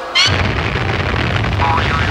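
Game-show Whammy animation sound effect: a cartoon dynamite explosion that hits sharply just after the start and rumbles on, heavy in the low end, for about two and a half seconds. It marks that the contestant has landed on a Whammy and lost his winnings.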